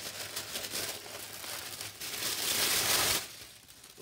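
Tissue paper rustling and crinkling as it is pulled off a wrapped paper kit. It is loudest a couple of seconds in and dies away just after three seconds.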